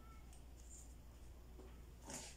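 Near silence: room tone with a low hum and a few faint, light rustles as a tape measure is laid along pattern paper.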